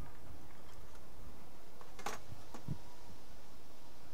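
Two light clicks, one just after two seconds in and a smaller one about half a second later, from hands moving a pen and ruler over foam board on a cutting mat, over a steady background hiss.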